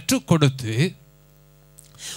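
A man speaks into a handheld microphone for about the first second, then stops. In the pause a faint, steady electrical mains hum from the microphone and sound system is heard.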